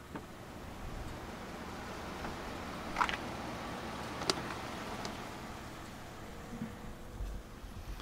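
Outdoor street ambience: an even rushing noise that swells over the first couple of seconds and eases off after about six, with a brief chirp about three seconds in and a sharp click a second later.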